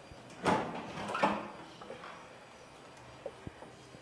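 Rear engine lid of a Volkswagen Beetle being unlatched and lifted open: two short rattling handling sounds about half a second and a second in, then a couple of faint clicks near the end.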